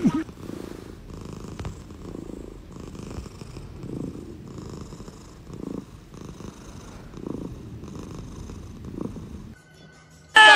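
Tabby cat purring while its head is stroked, the purr swelling and fading in a steady rhythm with each breath. It cuts off near the end.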